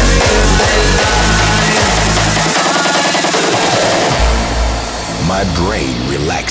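Hardstyle dance music at about 154 BPM, mixed from one track into the next: a heavy repeating kick drum and bass cut out about two and a half seconds in and come back about a second and a half later. Near the end a voice enters over the music.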